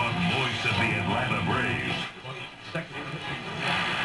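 An RCA 810K tube radio's loudspeaker playing a broadcast, speech mixed with music, while the dial is turned across stations; the sound drops briefly a little past the middle.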